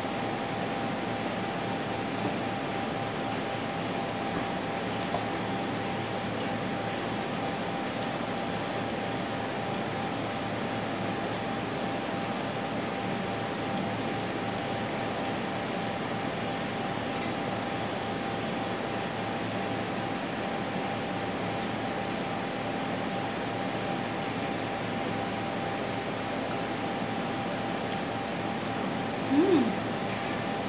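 Steady mechanical hum and hiss with a faint constant tone, holding level throughout, and a few faint light clicks.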